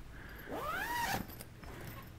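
Zipper being pulled shut on a fabric storage cabinet cover: one quick pull about half a second in, its pitch rising and then easing off.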